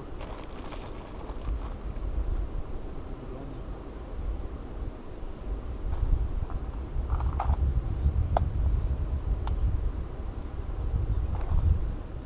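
Wind buffeting the microphone as a low rumble, growing stronger about halfway through, with a few light clicks as fishing tackle is handled.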